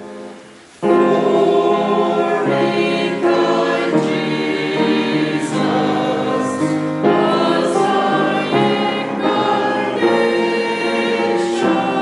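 Mixed church choir singing together. A held chord fades away, then the full choir comes back in at once just under a second in and sings on in sustained chords.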